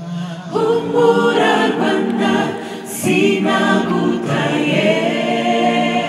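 Mixed choir of men and women singing a Kinyarwanda gospel song into microphones, unaccompanied. Low voices hold a note, and the full choir comes in about half a second in, then sings on in sustained chords.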